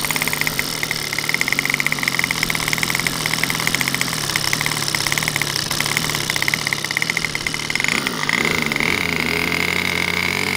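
Small Evolution gasoline two-stroke RC airplane engine idling close up, a steady fast firing rhythm. About eight seconds in its note settles into a smoother, steadier tone.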